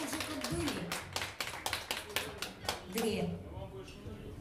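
Small audience clapping: a scatter of separate hand claps that dies away about three seconds in, with a voice speaking faintly underneath.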